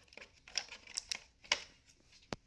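Plastic scraping, rattling and clicking as the battery pack is slid out of the UPS's plastic battery compartment: a few short scrapes and knocks, the sharpest about one and a half seconds in.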